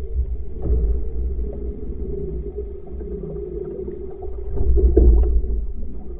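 Rowing shell moving through the water, heard from a camera on its bow: a steady low rumble of water along the hull, swelling louder about a second in and again for a second near the end, likely with the rower's strokes.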